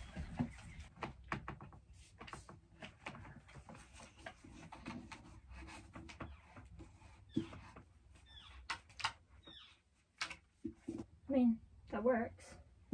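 Faint handling noises of a pinboard being strung and hung on a wall: scattered light taps, clicks and rustles, with a few short high squeaks from about halfway on.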